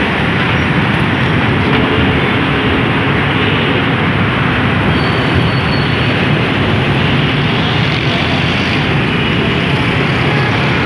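Steady, loud road and traffic noise heard from a moving vehicle driving through an underpass in city traffic.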